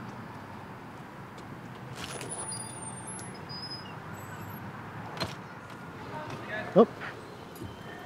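Outdoor street ambience: a steady hum of background traffic with a couple of faint clicks and a few brief, faint high-pitched tinkles about two seconds in. A short voice is heard near the end.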